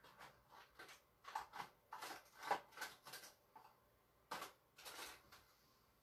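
Small plastic paint tubes and bottles being picked through and handled, a quick irregular run of light clicks, taps and rattles that dies away near the end.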